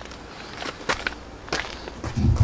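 A person moving on concrete: a few soft taps and scuffs over a steady outdoor background hum.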